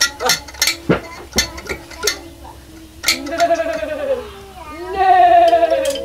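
A few sharp plucked notes on a small hand-held instrument, then a puppeteer's voice giving two drawn-out, arching whinny-like calls for a horse puppet, with a held note underneath the second.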